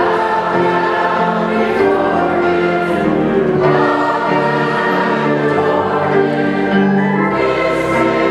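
Church choir and congregation singing a slow hymn with piano accompaniment, holding long notes as the chords change every few seconds.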